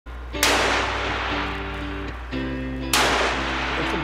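Two revolver shots about two and a half seconds apart, each with a long echoing tail, over background music.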